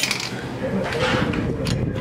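Vending machine coin return worked: the mechanism clicks, then a coin rattles down and clinks into the return cup, about a second in, with another sharp click near the end. A faint steady hum runs underneath.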